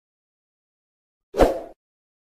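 A single short pop sound effect, the click of an animated subscribe button, about one and a half seconds in.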